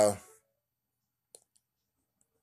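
A man's voice trailing off at the start, then near silence broken by a single faint, short click about two-thirds of a second in... then nothing until the end.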